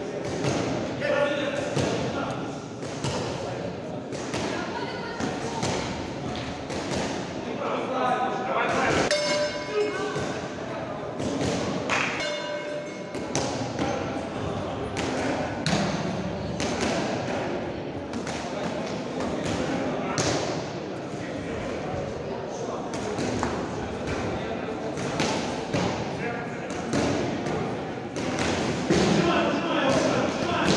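Indistinct shouting from coaches and spectators echoing in a sports hall, over repeated thuds and slaps from the fighters striking and moving on the mat.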